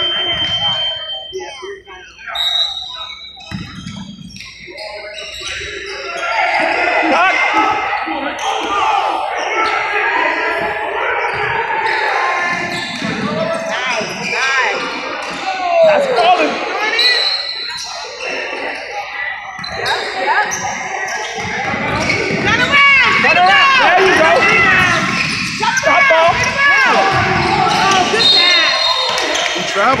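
A basketball game in play in a gymnasium: the ball bouncing on the hardwood court, shoes squeaking in quick high chirps, and players and spectators calling out, all echoing in the large hall.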